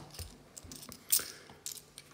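Light clinks of 50p coins being handled, a stack held in one hand while the top coin is slid off with the thumb, with a sharper click about a second in.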